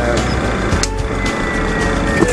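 Steady jet engine noise heard inside an airliner cockpit, with a thin high whine. A switch clicks about a second in and the whine then begins to fall slowly in pitch, as an engine is shut down at the parking stand.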